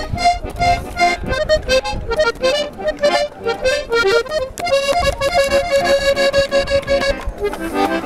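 Accordion playing an instrumental passage: quick runs of notes over bass thumps, then a long held note in the second half.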